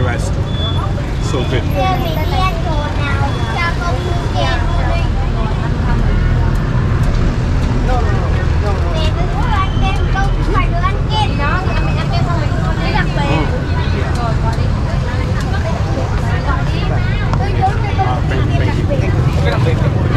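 Street traffic, mostly motor scooters, running as a steady low rumble, with people talking nearby and a few short high tones.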